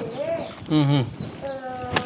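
Quiet talk with a held pitched call in the background, then a single chop of a meat cleaver into a wooden chopping block just before the end.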